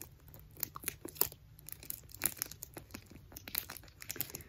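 Paper and tape crinkling and crackling in the hands as a paper squishy stuffed with newspaper is taped shut, in quiet, irregular small crackles.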